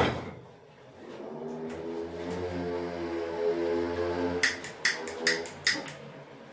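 A steady low droning hum lasting about three seconds, followed near the end by a quick run of sharp crinkling clicks from the paper butter wrapper being handled.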